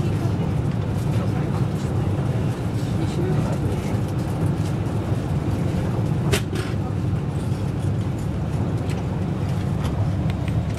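Cabin noise inside a Class 390 Pendolino electric train running at speed: a steady low rumble of wheels on rail and the running train, with one sharp knock about six seconds in.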